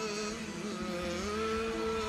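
Live Greek laïko band music: several sustained held notes that bend slowly in pitch, with no clear beat.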